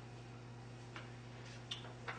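Quiet room tone: a steady low electrical hum with a few faint, irregular clicks.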